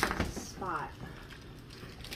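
Kinder Bueno bars and their plastic wrappers being handled on a wooden table: a few sharp clicks and snaps near the start, then quiet handling.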